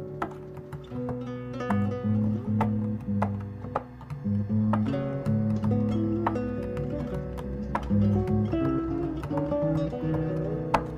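Fretless classical guitar being played: plucked melody notes over held low notes, with some notes sliding smoothly in pitch between one and the next.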